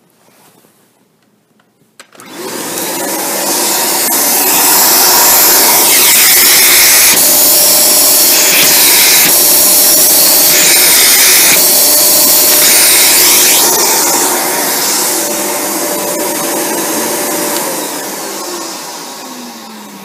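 Dyson Cinetic Big Ball upright vacuum switched on about two seconds in and running at full suction through its wand and crevice tool. In the middle the sound shifts back and forth several times as paper is touched to the tool's end and the pressure relief valve kicks in, earlier than it should. Near the end the motor is switched off and winds down with a falling pitch.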